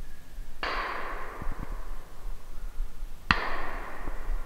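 Two sudden sharp sounds, the first a little over half a second in and the second, crisper one near the end, each fading away over about a second.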